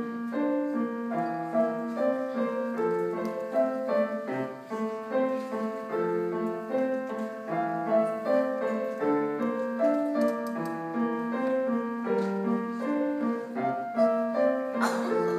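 Solo grand piano playing a classical-style piece: a steady, unbroken stream of notes with a melody over lower accompanying notes.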